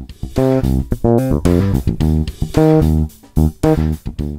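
Electric bass guitar played fingerstyle: a riff of separate plucked notes, some ringing, some cut short, moving between a low C and the C an octave above.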